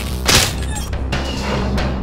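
Dark film score with a steady low bass drone, a short burst of noise about a third of a second in, and a few faint knocks.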